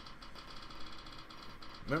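Rapid, steady ticking of a phone's spin-the-wheel app as the prize wheel spins, played through the phone's small speaker.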